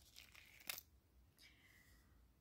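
Faint rustles and a brief soft flick, about two thirds of a second in, of a tarot card being slid out of a fanned deck and turned over.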